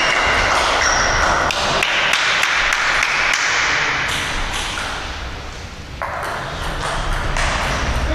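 A table tennis ball clicking back and forth off the bats and the table in a rally, a series of sharp ticks in a sports hall.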